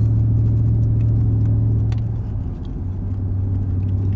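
Steady low engine drone heard inside a car's cabin. A little past halfway it dips briefly and settles at a slightly lower pitch.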